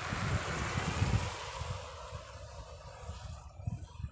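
Wind buffeting the phone microphone in irregular low gusts, with a rushing hiss that is strongest for the first second or so and then dies away.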